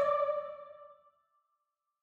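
Choir-like female voices, a soprano recording layered with a Classical Female Ensemble sample instrument, hold a note that dies away in reverb within the first second. Then complete silence.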